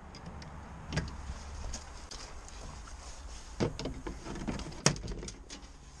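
Plastic door trim panel of a Mercedes Sprinter van knocking and clicking against the door as it is offered up and fitted, with a sharp knock about a second in and more knocks and rattles in the second half.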